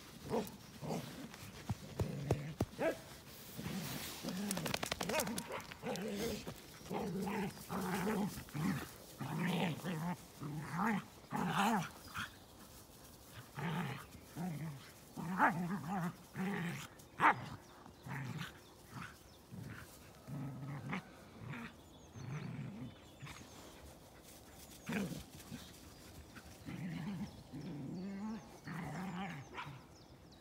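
Dogs play-fighting, with repeated short bouts of growling and grumbling.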